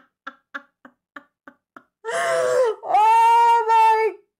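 A woman laughing hard: a run of short breathy laugh pulses, about three a second, then about halfway a few long, high-pitched wailing cries of laughter.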